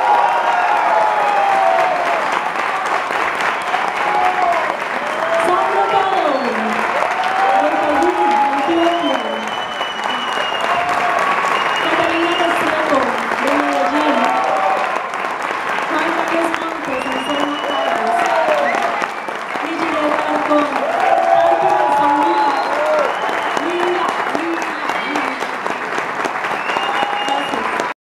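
Concert audience applauding steadily at the end of a song, with voices calling out over the clapping.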